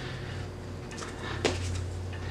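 Burlap being folded and handled by fingers: faint rustling with a small click about one and a half seconds in, over a steady low hum.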